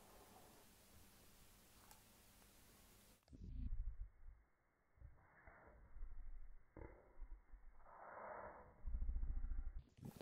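Near silence for about three seconds, then muffled low bumps and rumbling handling noise in several bursts, the loudest near the end, as hands scramble around a plastic enclosure to catch an escaping tarantula.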